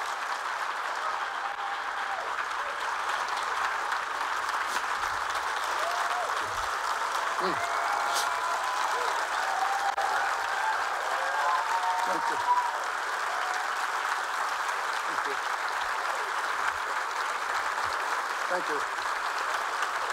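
A large audience applauding steadily, the clapping a little louder in the middle before easing slightly.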